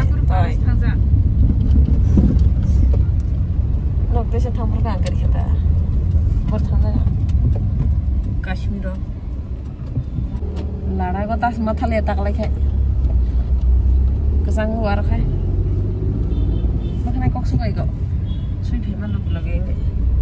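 A steady low rumble runs throughout, with voices speaking in short stretches over it.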